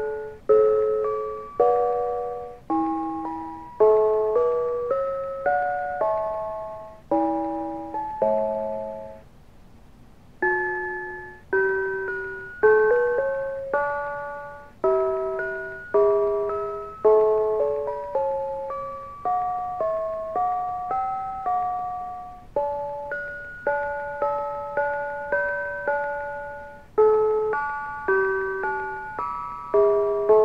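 Mr. Christmas Bells of Christmas (1991) automated brass bells playing a Christmas tune in four-part harmony: quick runs of struck, ringing notes, often several at once, each dying away fast. There is a brief pause about ten seconds in before the bells start up again.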